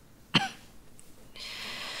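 A woman's single short, sharp cough about a third of a second in, then a soft, drawn-out breathy sound through the second half. She is an ailing woman with a persistent cough.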